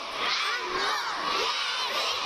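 Crowd of children shouting and cheering, many high voices overlapping in a steady din.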